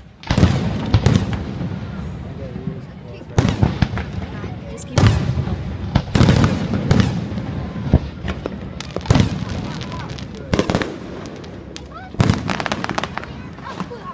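Fireworks display: aerial shells bursting one after another, a loud bang about every second with a low rumble trailing after each.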